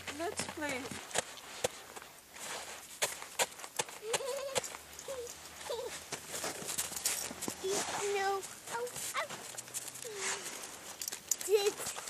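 Footsteps crunching in snow, with a small child's short wordless vocal sounds every second or two.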